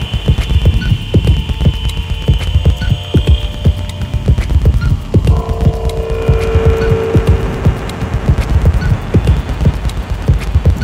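Experimental harsh noise music: a dense, pulsing low rumble struck by irregular crackling clicks, with thin sustained electronic tones above it. A high whine fades out after about three seconds, and a mid-pitched drone comes in about five seconds in and lasts a couple of seconds.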